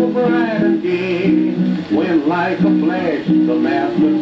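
A 1920s country ballad playing from a 78 rpm shellac record on a turntable: sustained acoustic accompaniment with a wavering, gliding melody line over it, between sung lines.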